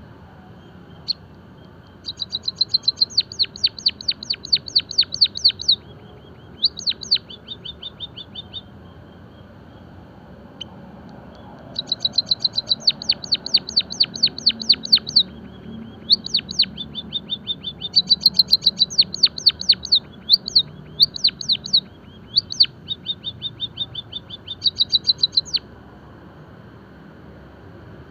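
White-headed munia singing: trains of rapid, sharp, high-pitched chirps, about six or seven notes a second. The trains last two to four seconds each and come five times with short pauses between.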